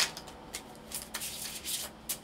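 A deck of tarot cards being shuffled by hand: a sharp snap at the start, then a run of short papery rustles.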